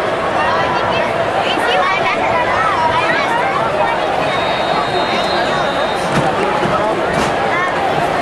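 Football stadium crowd in the stands: many voices talking at once, a steady hubbub with no single speaker standing out. About halfway through, a faint, steady high tone sounds for a couple of seconds.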